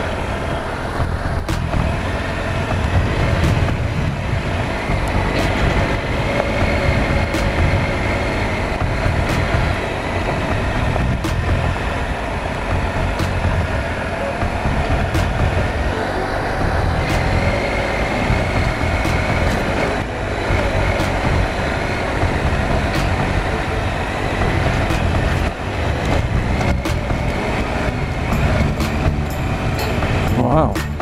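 Triumph Explorer XCa motorcycle's 1215cc three-cylinder engine running with a steady low rumble as the bike rides along a rough dirt track, with frequent short sharp knocks and clicks throughout.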